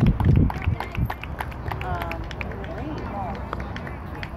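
Spectators' voices calling out and chatting, with a few sharp short clicks, over a low rumble of wind on the microphone that is loudest in the first half second.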